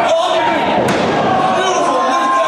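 A wrestler slammed down onto the wrestling ring's mat, a sharp impact with a second, sharper crack about a second in.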